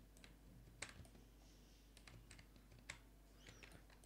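Faint, scattered clicks of a computer keyboard and mouse over near-silent room tone: a handful of separate clicks, the clearest a little under a second in and again near three seconds in.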